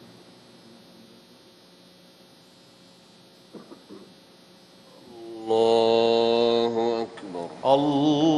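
A quiet, steady hum of a large reverberant hall, then from about five and a half seconds in the imam's chanted takbir, "Allahu akbar", in long held notes over the mosque loudspeakers. It is the call that moves the congregation up from the last prostration into the final sitting of the prayer.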